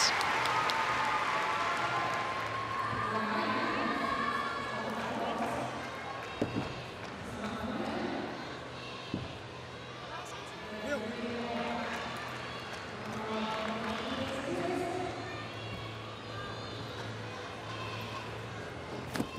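Arena crowd applauding and cheering after a vault, dying away over the first few seconds. Then the large hall's murmur with distant voices echoing, a steady low hum and a few scattered knocks.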